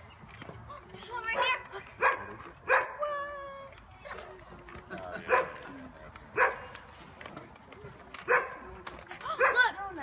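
A dog barking: single sharp barks at irregular gaps of about a second or more, some seven in all.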